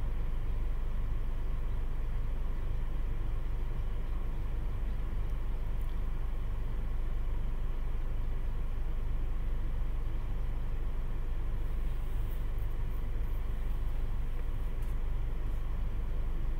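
A steady, unchanging low hum with faint steady tones above it, and a few faint small clicks.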